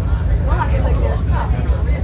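Steady low drone of a Star Ferry's engine heard inside the passenger cabin, with passengers' voices over it from about half a second in.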